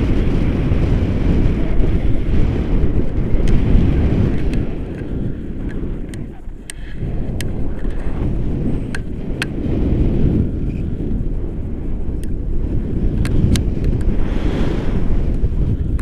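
Airflow buffeting the camera microphone during a paragliding flight: a loud, low rumbling wind roar that eases about six seconds in and then builds again. Scattered short ticks sound over it.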